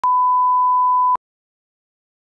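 Steady 1 kHz line-up test tone that accompanies colour bars, lasting just over a second and starting and stopping abruptly with a click.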